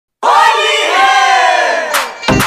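A group of voices shouting together in one long, loud cry that slides down in pitch, starting a moment in and ending in a sharp click.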